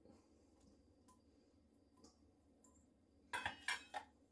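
Kitchenware clinking: a few faint ticks, then a quick run of sharp, slightly ringing clinks near the end, as vegetables are tipped from a can into a salad bowl.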